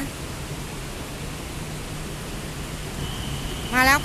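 Steady hiss with a low hum on an open elevated platform. About three seconds in, a steady high whine comes in as a BTS Skytrain pulls into the station.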